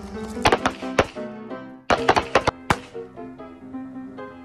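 Handgun shots from a firing line of several shooters, in two quick strings: one about half a second in, another around two seconds in. A music bed plays under them.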